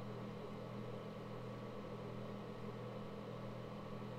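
Steady low electrical-sounding hum with a faint hiss: the room's background noise, with no other sound standing out.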